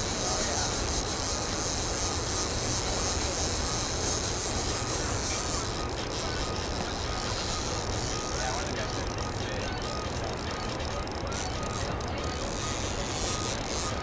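Steady rushing noise of turbulent water churning in the river below a hydroelectric dam, with a low rumble underneath. The high hiss thins somewhat about six seconds in.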